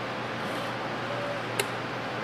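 Fisnar F4200N benchtop dispensing robot running its program, moving the syringe tip to the start of the pattern: a steady low hiss, a faint brief tone a little past halfway, then a single sharp click about one and a half seconds in.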